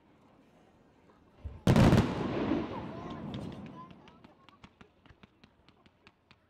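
Fireworks display: a loud bang about a second and a half in that echoes and fades over a couple of seconds, followed by a run of short, sharp crackling pops.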